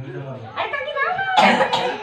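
People talking indoors, with one short harsh burst of noise about one and a half seconds in.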